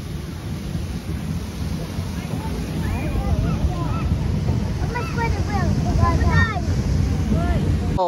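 Wind buffeting the microphone, a steady low rumble. Faint high voices call out in the middle of it.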